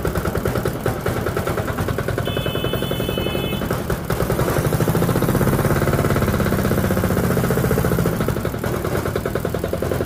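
Buffalo 10 tractor engine running with a rapid, even beat; it gets louder and deeper from about four and a half seconds in and eases back after about eight seconds.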